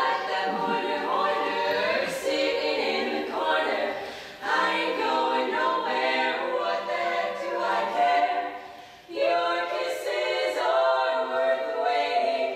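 Female barbershop quartet singing a cappella in four-part close harmony, with short breaks between phrases about four and nine seconds in.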